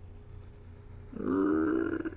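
A man's short wordless vocal sound, held at one steady pitch for under a second, starting about a second in after a quiet pause.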